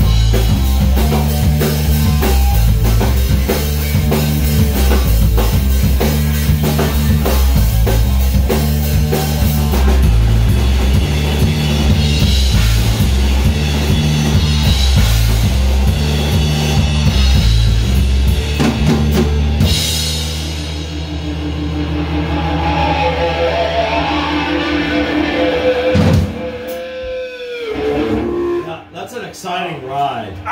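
Rock band playing live in a small room: drum kit, electric guitar and bass guitar driving a loud repeating riff. About two-thirds of the way through, the bass and drums drop out and ringing guitar is left. A final hit ends the song a few seconds before the end, and voices follow.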